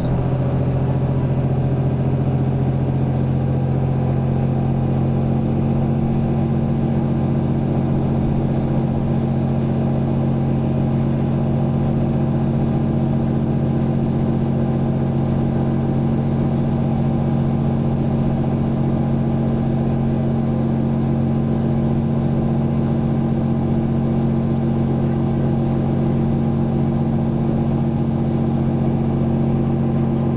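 Mercedes-Benz Conecto city bus heard from inside the cabin, its OM936 six-cylinder diesel running with a steady hum that holds one pitch throughout, neither revving up nor dropping.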